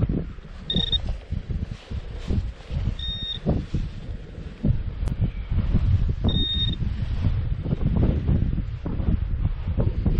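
Three short high electronic beeps from a metal detector, spaced about two and a half seconds apart, signalling metal in the soil being searched. Underneath, wind buffets the microphone and soil crumbles and rustles in gloved hands.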